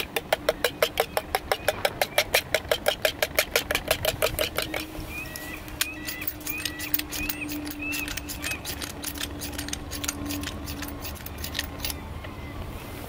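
Coil whisk beating eggs in a camping pot: fast, even clicks of the wire against the pot, about eight or nine a second for the first five seconds, then slower, scattered taps.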